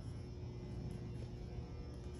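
Room tone: a steady low hum with no distinct events.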